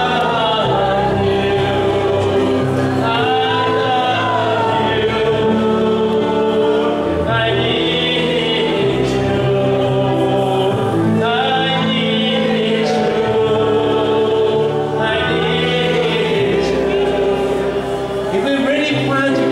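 Gospel worship song: a man sings over an electronic keyboard playing long held chords, in phrases a few seconds long, with other voices sounding like a choir.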